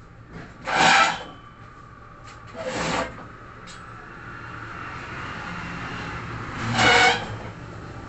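A broom sweeping a hard floor: three loud rasping strokes, about a second in, near three seconds and near the end, with a softer drawn-out rush building between the last two.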